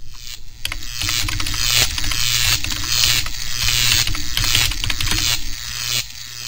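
Electronic whirring and buzzing sound effect over a steady low hum, pulsing in repeated falling sweeps a little faster than once a second, fading out near the end.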